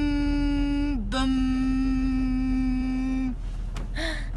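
A girl's voice holds long, steady, level notes into a clip-on tuner to check its pitch reading. One note breaks off with a short dip about a second in, and a second note holds for about two seconds. A low, steady car-cabin rumble runs underneath.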